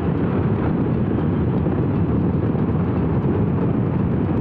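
Honda CRF1000L Africa Twin parallel-twin motorcycle riding steadily at road speed: a dense, steady rush of wind noise on the microphone with the engine running underneath.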